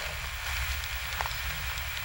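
Pause between spoken phrases: the steady hiss and low hum of an amateur camcorder recording, with a couple of faint ticks in the middle.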